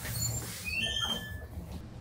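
A few short, high-pitched squeaks in the first second and a half, one gliding upward, over a steady low hum.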